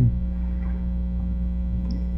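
Steady low electrical mains hum with several overtones, running unchanged through a pause in speech.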